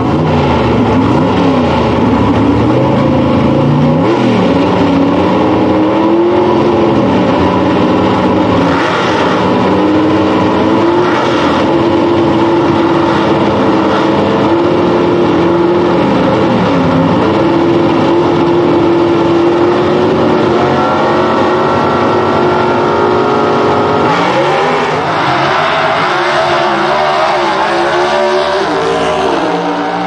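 Two A/Gas gasser drag cars, one a 1955 Chevy, idling and revving loudly at the starting line, their engine pitch held and stepped up and down. About 24 seconds in they launch, and the engine pitch climbs again and again as they shift through the gears, then fades as they pull away.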